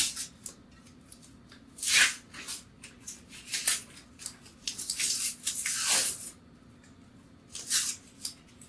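Paper wrapping being torn and crinkled off a glass beer bottle by hand, in several separate rustling bursts, the longest about five to six seconds in.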